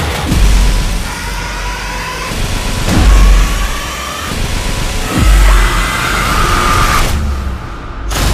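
Horror trailer score: three deep booming bass hits under a dense, screeching high layer of rising tones. The sound builds, then cuts off abruptly near the end.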